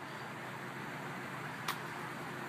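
Steady, even background noise outdoors in a car lot, with one short click about 1.7 seconds in.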